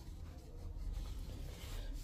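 Faint rustling of paper banknotes being handled, over a low background rumble.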